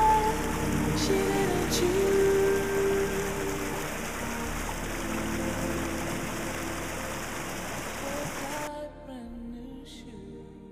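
Stream water rushing over rocks, a steady noise under slow background music with a held-note melody. Near the end the water sound cuts off abruptly and the music continues alone, fading.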